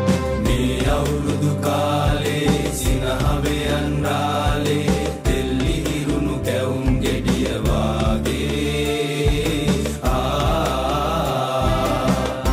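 Live band music with a group of voices singing a Sinhala New Year song together over a steady bass line and drum beat.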